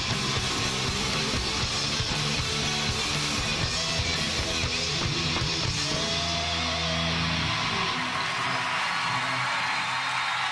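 Live heavy metal band playing loud: distorted electric guitars, bass and drums. Near the end the bass and drums drop out as the song finishes, leaving a thinner high wash of sound.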